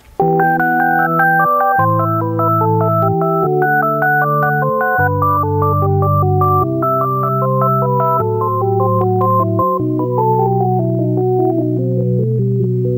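Korg Triton LE synthesizer playing its Sine DWGS-Organ program, an organ sound imitated with sine waves. Held chords sit in the low register under a moving melody of pure, clean tones, with a lyrical feel. The playing starts a moment in.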